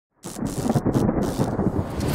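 Thunderstorm sound effect: deep thunder rumbling with a rain-like hiss, starting suddenly about a quarter of a second in.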